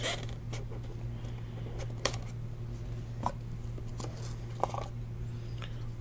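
Hands handling a cardboard trading-card box and its stack of cards: a few light clicks and scrapes, about four over several seconds, over a steady low hum.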